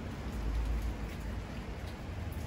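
Steady rain falling and pattering on surfaces, with a low rumble underneath.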